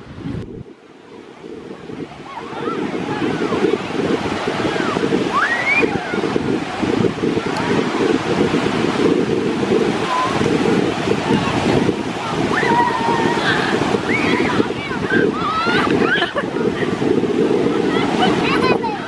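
Ocean surf breaking and washing up the shore, with wind buffeting the microphone. It builds over the first few seconds after a brief lull, then holds steady, with faint distant voices over it.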